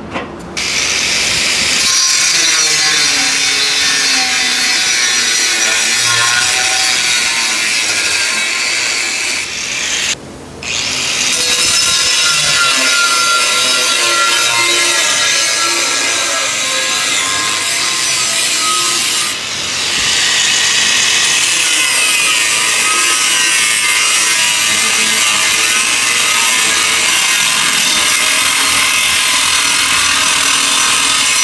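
Angle grinder's abrasive disc cutting into 3 mm steel plate: a steady, loud, harsh whine of the disc biting the metal. It starts about half a second in, breaks off briefly about ten seconds in and dips again shortly before twenty seconds.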